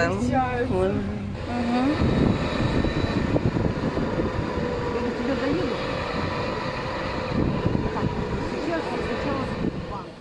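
Street noise with a vehicle engine running steadily, under people talking nearby.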